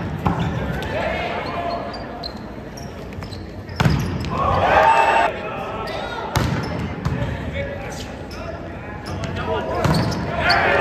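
A volleyball being struck hard during play, sharp slaps of serves and attacks echoing in a large hall, about four hits in all. Voices of players and spectators shout and cheer after the hit about four seconds in.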